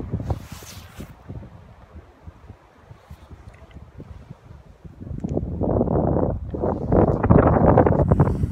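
Strong gusty wind buffeting the camera's microphone, a rough low rumble that grows much louder about five seconds in.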